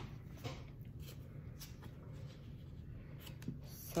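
Faint rustling and a few small taps of paper as a small card-deck guidebook is picked up and its pages leafed through.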